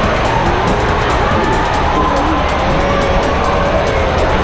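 Loud, steady roar of indoor water-park noise at a slide's raft launch: rushing water with faint, drawn-out wavering tones over it.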